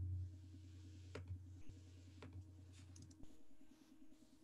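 Silhouette Alta 3D printer faintly running as it loads and heats filament before a print, heard over a video call: a low hum that drops away about three seconds in, with a few soft clicks.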